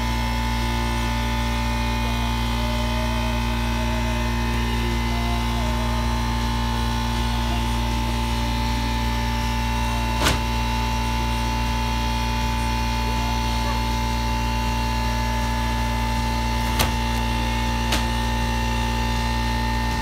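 A steady machine hum made of several fixed tones, with three short sharp clicks: one about halfway through and two close together near the end.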